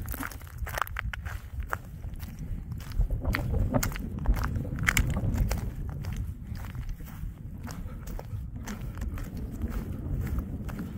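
Footsteps crunching and clinking on loose flat shale scree, in an irregular run of small clicks. Wind rumbles steadily on the microphone underneath.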